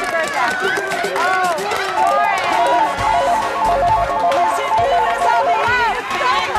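Upbeat game-show music under excited shouting, whooping and clapping from contestants. From about two seconds in, a quick electronic two-note melody repeats over it.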